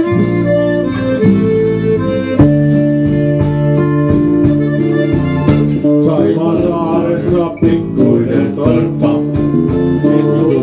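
A karaoke backing track for a country-style song playing loud through speakers: a reedy lead melody over guitar, with a steady drum beat coming in about two and a half seconds in.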